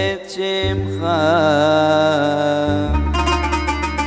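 A man sings a Hebrew prayer melody in a cantorial style, with wavering ornamented pitch, over instrumental accompaniment that holds a low bass note. About three seconds in, a quick run of plucked notes sets in.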